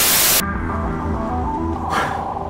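A short burst of television static hiss that cuts off about half a second in, followed by background music of slow held notes.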